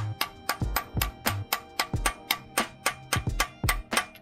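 A hammer rapidly tapping a steel socket used as a driver, seating a new pilot bearing into the end of the crankshaft: an even run of sharp metallic taps, about five or six a second, that stops near the end, over background music.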